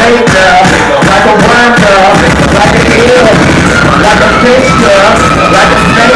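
Live hip hop music played loud through a club PA, heard from within the crowd on a phone: a dense, constant low end under wavering pitched tones, with no breaks.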